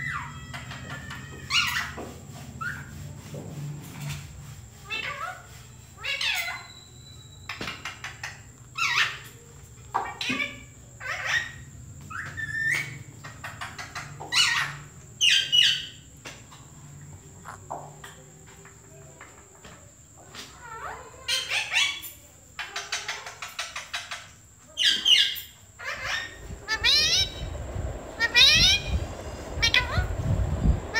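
Rose-ringed parakeet calling: a long string of short, high calls about once a second, some sliding in pitch, with a quick run of rising notes near the end.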